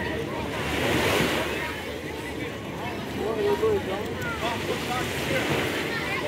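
Calm sea water lapping and sloshing close to the microphone, with wind on the microphone, swelling a little about a second in.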